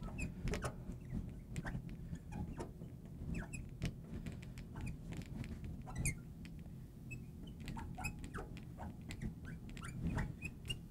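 Marker writing on a glass lightboard: faint, scattered squeaks and taps of the tip on the glass as a line of words is written.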